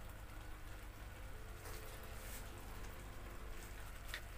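Snake gourd and lentil curry simmering in a pan, a faint steady bubbling patter.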